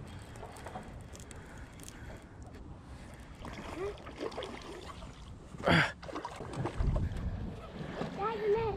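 Water sloshing and wind on the microphone as a hooked bass is reeled to the boat and splashes at the surface, with a short loud splash-like burst and a grunt near the end.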